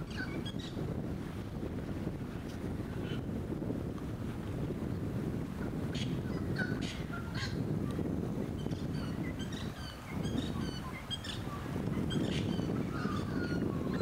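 Wind buffeting the microphone in a steady low rumble, with small birds chirping over it in short high calls that come thicker in the second half.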